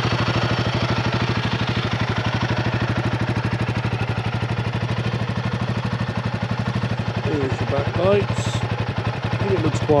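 Royal Enfield Guerrilla 450's single-cylinder engine idling steadily just after start-up, with an even exhaust beat.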